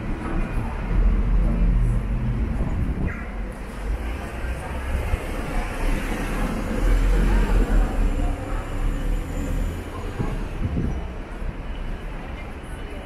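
Street traffic in a city centre: a low rumble that swells about a second in and again from about six to eight seconds, over steady street noise.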